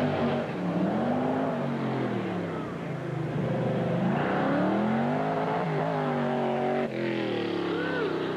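A De Tomaso Pantera's V8 engine revving up and down as the car accelerates and lifts off between pylons on an autocross course. The pitch swings up and back repeatedly, with a brief break about seven seconds in.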